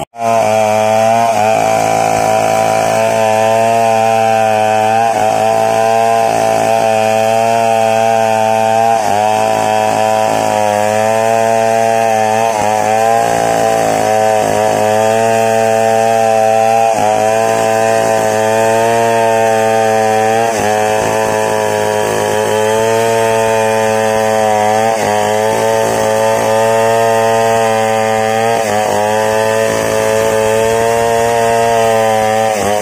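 Two-stroke petrol chainsaw with a long bar running at high revs, ripping a wooden plank lengthwise. The engine note dips briefly every few seconds as the chain bites into the wood, then recovers.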